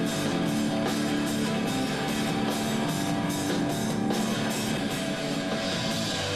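Rock band playing live: loud electric guitars over a drum kit, with cymbal strokes keeping a steady beat about two to three times a second.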